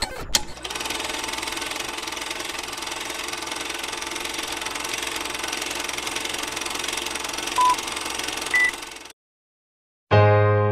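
Film projector sound effect: a steady mechanical rattle under an old film-leader countdown. Near the end come two short beeps about a second apart, the second higher than the first, and then it cuts off.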